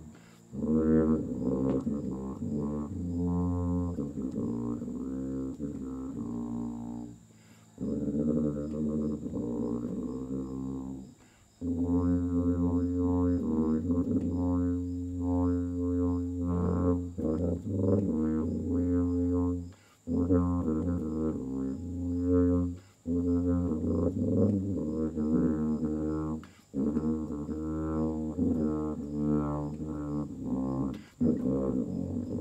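Solo tuba playing a slow melody of low, held notes in long phrases, with short breaks between the phrases.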